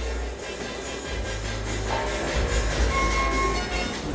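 Outdoor ambience: a steady low rumble and broad hiss, with faint music playing in the background.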